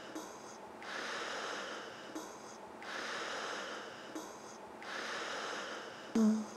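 Intro of an electronic pop track: a breath-like noise swell that rises and falls about every two seconds, each cycle opening with a soft click, before the beat comes in.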